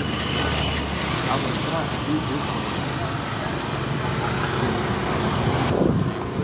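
Road traffic noise, with a motor scooter passing close by.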